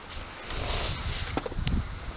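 Rustling and scuffing of firefighter turnout gear and boots on pavement as a downed firefighter is shifted into position, with a few small clicks and wind buffeting the microphone.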